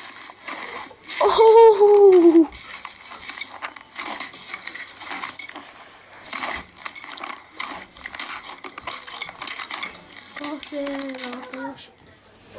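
Thick green slime being squeezed and kneaded by hand, giving a dense, irregular crackling of many small pops and clicks. A voice makes a drawn-out falling sound about a second in and again near the end.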